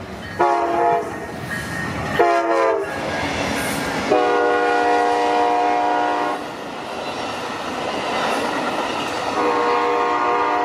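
Nathan K5LA five-chime air horn on an Amtrak P42DC locomotive sounding a short blast about half a second in, another about two seconds in, and a longer blast from about four to six seconds, then sounding again near the end: the horn signal for a grade crossing. Under it the passenger cars roll past with a steady rumble and wheel clatter on the rails.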